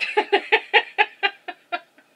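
A woman laughing: a quick run of about a dozen short "ha" sounds, some six a second, growing fainter near the end.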